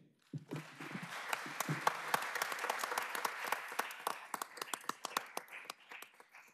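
Audience applauding: many hands clapping, starting about half a second in and thinning out near the end.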